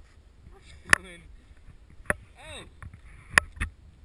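Thrown clumps of snow striking the camera: four sharp knocks, the last two close together and loudest, with a few short wordless vocal sounds between them.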